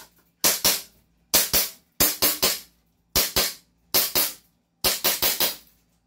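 Gas blowback airsoft pistol, a Staccato 5.1 replica on green gas, fired about seven times at roughly one shot a second until the magazine is empty; each shot is a sharp crack followed at once by the clack of the slide cycling.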